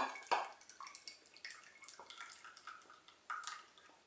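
Thick hot milk mixture pouring from a stainless steel saucepan into a glass dish: a faint, uneven liquid trickle and splash, with a few light clicks.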